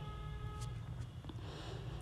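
Quiet steady low hum with two faint clicks about two-thirds of a second apart, from a knife slitting a green chilli.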